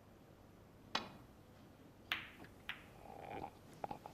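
Snooker balls clicking during a safety shot. The cue tip strikes the cue ball with a sharp click about a second in, and the cue ball hits a red with another sharp click about a second later. Lighter clicks follow as balls touch each other and the cushions.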